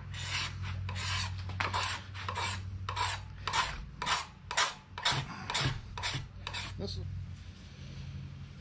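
A hand file drawn in short, fine strokes along a wooden axe handle, a little over two rasping strokes a second, stopping about seven seconds in.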